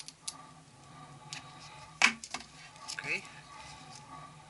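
Small metal clicks and clinks from a thin copier charging grid and pliers as the grid is stretched and hooked onto its corona electrode, a few separate clicks with the loudest about two seconds in.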